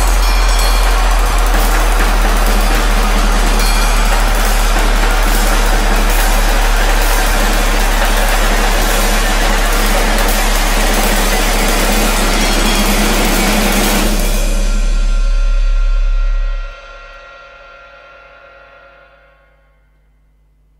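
Experimental percussion music: a dense, noisy wash over a steady low drone. The wash stops about fourteen seconds in and the drone cuts off a couple of seconds later, leaving ringing tones that die away.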